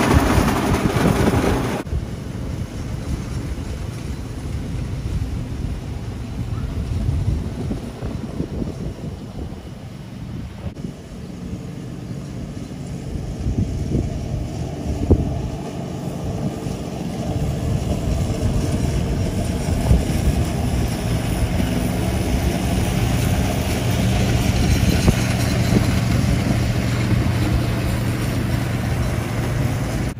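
Riding lawn mower engine running steadily while cutting grass. It is loud and close for the first two seconds, then more distant, growing louder again through the second half as the mower works across the field.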